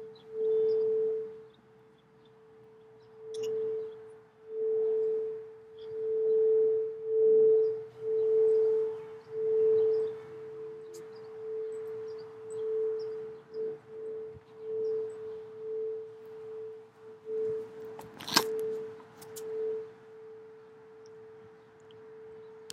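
Singing bowl rung by a wand circling its rim, holding one steady tone that swells and fades in waves. A single sharp click comes near the end.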